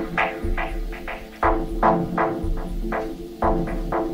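Electronic house/techno music: a deep bass note lands about once a second under a quick pattern of short, repeated synth stabs.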